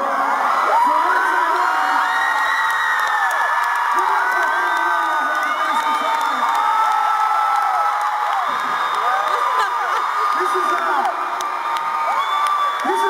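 Arena crowd cheering and screaming, many high voices shrieking over one another without a break.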